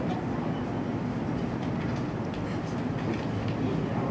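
Steady background room noise, heaviest in the low range, with no clear pitch or rhythm.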